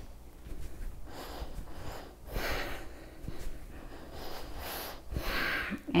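A woman's breathing during a warm-up exercise, several soft breaths through the nose, the strongest about halfway through.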